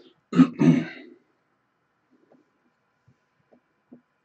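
A man clearing his throat in two quick pushes, lasting just under a second, followed by a few faint clicks.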